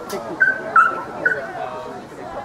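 Spectators talking, with three short high-pitched yips from a small dog, about half a second apart.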